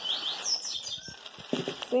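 A small bird chirping a quick run of high, sliding notes in the first second, over the crinkling of clear plastic produce bags being handled.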